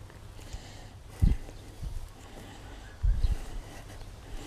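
Handling noise from a handheld camera being swung about: dull low thumps, once about a second in and again as a short cluster around three seconds in, over faint outdoor background.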